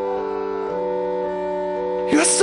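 Worship-song music between sung lines: soft sustained keyboard chords, the chord shifting within the first second, with no voice.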